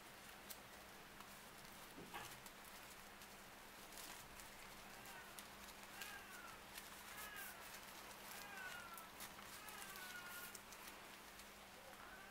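Near silence: faint scattered crinkles and clicks of paper yarn being worked with a large crochet hook, over a low steady hum. A few faint high chirps come in the second half.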